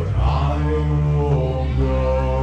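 Live rock band playing: electric guitar, bass and drums, with a male voice singing drawn-out notes into the microphone.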